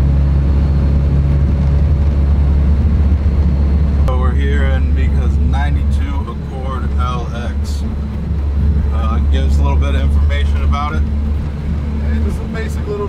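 H23A four-cylinder engine of a Honda Accord running at steady revs, heard from inside the cabin as a steady low drone mixed with road noise. It eases slightly about halfway through, and voices talk over it from about four seconds in.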